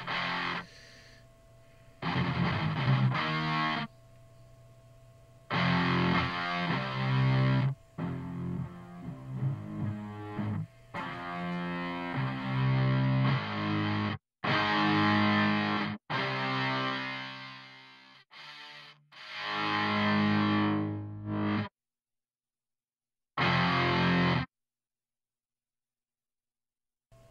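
Sampled heavy-metal distorted electric guitar power chords, layered with bass, played on a keyboard in short bursts that stop dead between phrases. Partway through, the highest treble is cut as the library's guitar filter is turned down. One last short chord comes a couple of seconds before the end.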